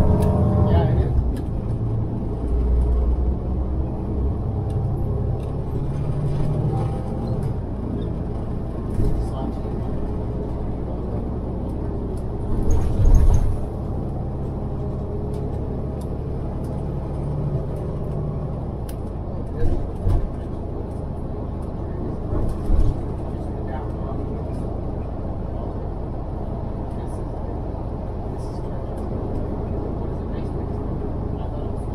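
Inside a moving city transit bus: steady engine hum and road rumble as the bus drives along, with the engine note changing as it pulls away at the start, and a few short jolts from the road about halfway through and twice more later.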